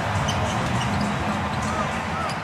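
Basketball being dribbled on a hardwood arena court, over a steady low arena rumble, with a short squeak near the end.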